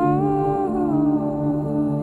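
Slow ambient background music: sustained low chords under a humming-like melody line that steps down in pitch about a second in.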